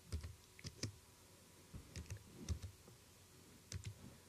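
Computer keyboard being typed on: a few quiet, irregularly spaced keystrokes.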